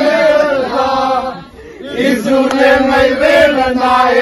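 Group of men singing a song together in unison, one voice carried through a microphone, in long held notes with a brief break about one and a half seconds in.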